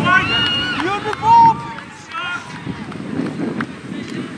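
Several voices shouting and calling out together, with one loud held shout about a second and a half in.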